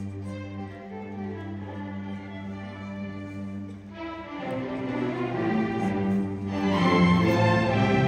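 Youth string orchestra of violins, violas and cellos playing: held low notes at first, then a swell about halfway through into a fuller, louder passage.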